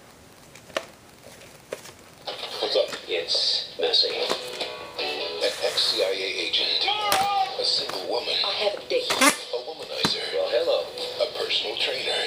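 Two clicks over a low hum, then about two seconds in a film trailer's soundtrack starts playing from a portable DVD player's speaker: music with voices and sound effects.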